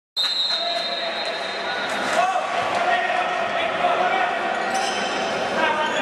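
Futsal being played in an echoing sports hall: the ball is kicked and bounces on the court while players call out. A steady high tone sounds through the first two seconds.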